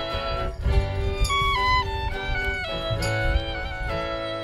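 Live acoustic band playing an instrumental break: a fiddle carries a stepping melody over strummed acoustic guitar chords.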